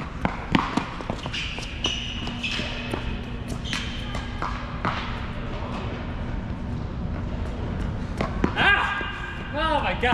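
Tennis ball bouncing and being struck by racquets on an indoor hard court, a series of sharp knocks in the first five seconds with shoe squeaks on the court surface between them. A man's voice comes in near the end.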